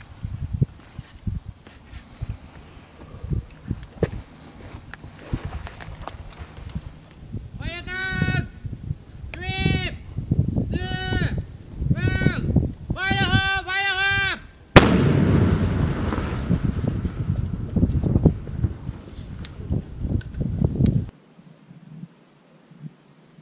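Several long shouted calls, then one sharp explosive breaching charge detonating on a plywood door about two-thirds of the way in, with a rush of blast echo and debris noise lasting several seconds after it.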